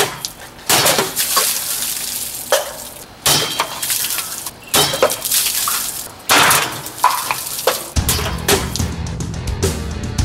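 Machete slashing through a plastic Coca-Cola bottle, followed by several loud splashes and sprays of fizzing cola. Rock music starts about eight seconds in.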